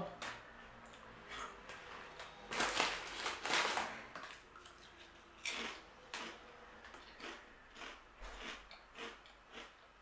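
Crunchy protein nachos being chewed: a dense run of crunches around three seconds in, then single crunches spaced out through the rest.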